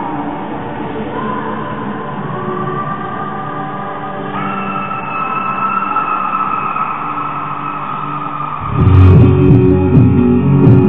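Live rock concert heard from the crowd: held, slowly sliding tones, then the full band comes in loud with guitars and drums near the end.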